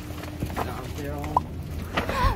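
A short vocal sound, a single brief pitched utterance about a second in, over a low steady background hum.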